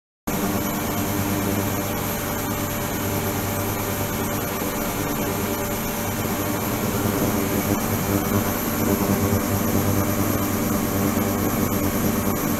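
Ultrasonic cleaning tank running with a probe in the water: a steady buzzing hiss over a low hum, starting abruptly just after the beginning.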